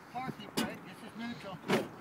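Low talking, with two short clunks: one about half a second in and a louder one near the end.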